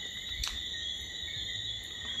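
Night insects, crickets, trilling steadily in several high pitches at once, with a single brief click about half a second in.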